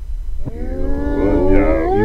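Wordless vocal sounds starting about half a second in: long wavering notes that slide up and down in pitch and grow louder, over a low rumble.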